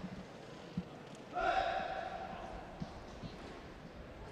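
Fencing-hall background hubbub with a few soft, low thuds. About a second and a half in, a single steady tone or call is held for about a second, then fades.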